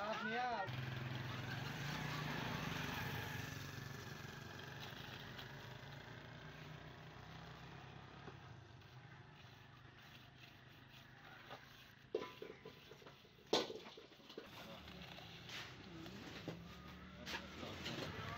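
An engine running steadily, loudest near the start and fading over about ten seconds. A few sharp knocks follow, the loudest about 13.5 seconds in.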